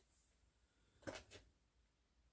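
Near silence, broken about a second in by two faint, short clicks a quarter second apart: small plastic RC shock parts being handled while the shock is bled.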